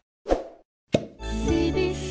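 Cartoon-style sound effects from a channel intro animation: two short pops in the first second, then a bright musical jingle with sustained tones starting just over a second in.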